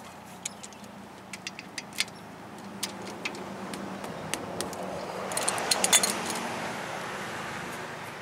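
Light metallic clinks and clicks of a hand wrench on the brake caliper bolts and caliper hardware as the caliper is unbolted, with a quick cluster of sharper metal rattles about five and a half seconds in. A vehicle passing nearby swells and fades underneath.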